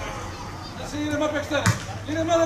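Men shouting on a football pitch, with one sharp thud of a football being struck or bouncing about a second and a half in.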